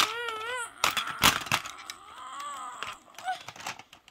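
A young child's drawn-out whining voice, high and wavering in pitch. It comes once near the start and again more faintly about two seconds in. In between there are a few sharp plastic clicks from a toy truck being handled.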